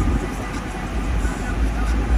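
Low, steady rumble inside the cabin of a 2016 Cadillac Escalade with its 6.2-litre V8 idling; it swells slightly near the end.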